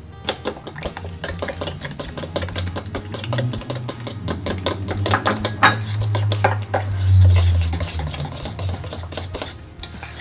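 A metal spoon stirring a wet batter of mashed banana, sugar and egg in a stainless steel bowl, with rapid clinks and scrapes against the bowl's sides. A low rumble swells in the middle.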